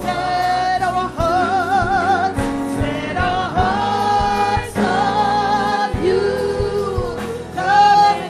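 A worship team singing a gospel song with a live band of drums and keyboard; the voices hold long notes, one with a wide vibrato about two seconds in.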